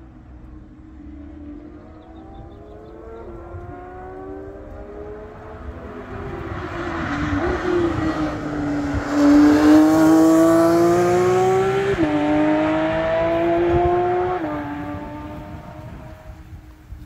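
A car's engine and exhaust on a race track, approaching from a distance with the note sagging as it comes through the bend, then accelerating hard past, loudest about ten seconds in. The pitch climbs and drops suddenly twice as it changes up through the gears, and the sound fades away near the end.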